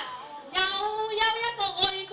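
A very high singing voice holding long notes with a wide vibrato, each note broken off by a short breath.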